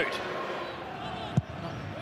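Stadium crowd ambience at a football match, a steady murmur, with a single short dull thump about one and a half seconds in.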